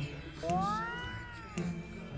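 A single high-pitched, meow-like call of about a second, rising and then falling in pitch, over soft background music.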